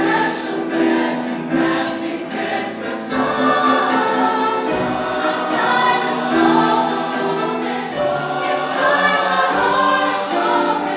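A mixed choir of teenage voices singing a Christmas song, several parts holding and moving notes together in a continuous phrase.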